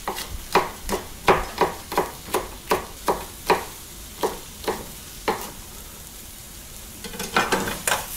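Chef's knife chopping a green bell pepper on a plastic cutting board: about fifteen quick strikes, roughly three a second, stopping about five seconds in. A short clatter follows near the end.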